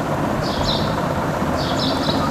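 Low rumble of a passing vehicle, building gradually, with a few short high bird chirps over it.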